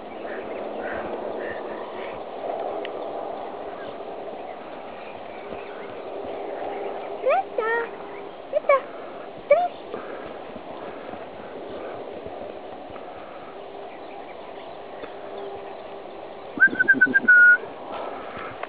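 A person's short wordless vocal calls: three quick rising calls about halfway through and a longer wavering call near the end, over steady outdoor background noise.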